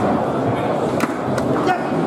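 Foosball table in play: sharp clacks of the ball being struck by the rod figures and knocking against the table. Two clacks come about a second in, close together, and a lighter one near the end, over a steady murmur of voices in the hall.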